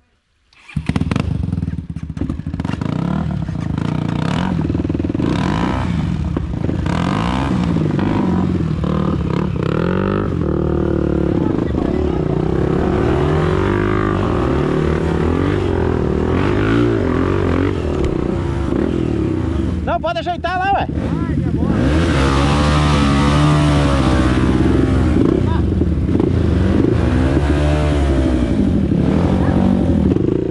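Trail motorcycle engines running and being revved up and down again and again as the bikes are worked up a muddy climb, with the revving loudest and most sustained in the last third.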